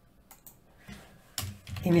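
A few light keystrokes on a computer keyboard, typing a short word, in the first second.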